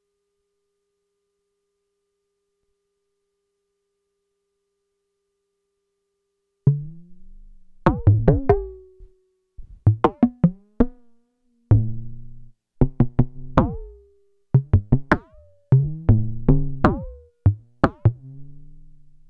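Buchla-style electronic bongo from a Eurorack modular: a frequency-modulated Make Noise Dual Prismatic Oscillator struck through an Optomix low-pass gate. After about six and a half seconds of near silence with a faint steady tone, a quick run of irregular pitched hits begins, each with a falling pitch at the strike and a short ring. Pressure from the Pressure Points touch plates is damping the ringing of the low-pass gate's vactrols.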